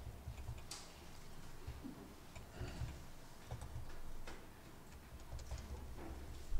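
Faint, irregular clicks of a computer keyboard and mouse being used, a few separate taps spread across several seconds, over a low rumble.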